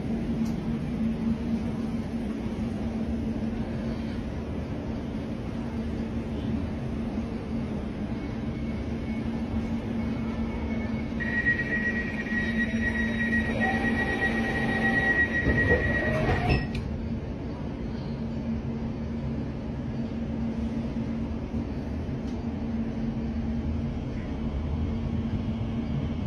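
Elizabeth line Class 345 train running underground, heard from inside the carriage: a steady rumble with a low hum. From about eleven seconds in, a high steady squeal joins it for about five seconds and cuts off suddenly.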